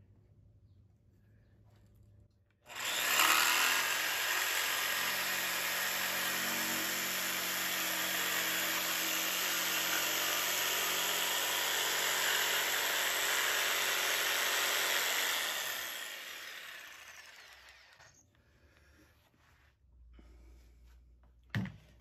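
Corded Makita jigsaw starting about three seconds in and running steadily as it cuts through a wooden board for about twelve seconds, then fading away over a couple of seconds.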